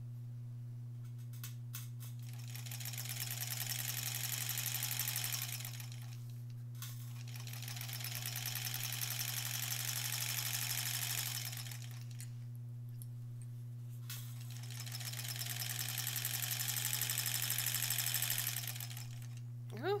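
1938 Kenmore straight-stitch sewing machine stitching a seam in three runs of about four to five seconds each, with short pauses between. Each run speeds up and then slows down, with a fast, even needle rattle throughout.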